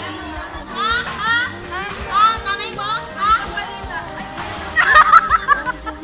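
Children talking and calling out in high voices, loudest about five seconds in, over steady background music.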